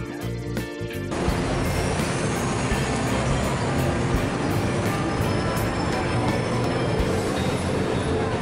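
Background music with a steady beat. About a second in, busy city-street noise with motor traffic comes in beneath it.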